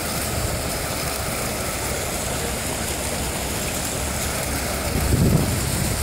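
Steady splashing and rushing of several fountain jets falling back into a pool, with a short low-pitched swell near the end.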